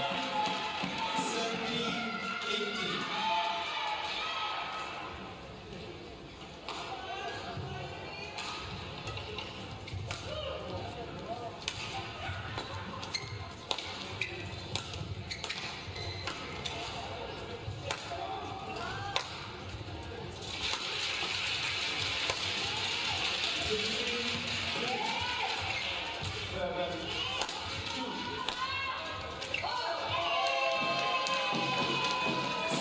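Badminton rally: rackets striking the shuttlecock in sharp cracks and shoes squeaking on the court surface, over music playing in the arena.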